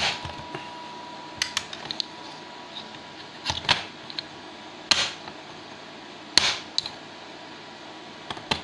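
A handful of short, sharp knocks and clicks, irregularly spaced, as a graphite ingot mould holding a cast Rose's metal bar is handled and set down on a hard worktop.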